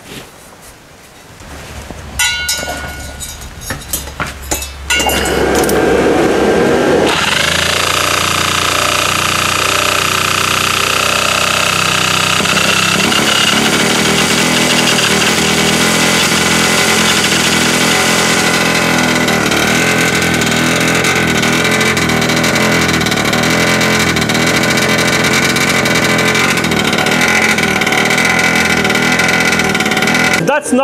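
A tuned two-stroke engine with an expansion-chamber exhaust pipe. After a few clicks and knocks it is spun up and fires about five seconds in, then runs loudly at a steady speed. It is running with a small exhaust leak at the open EGT probe port, a test of whether the leak lets it rev past a low-rpm problem area where pulses in the pipe interfere.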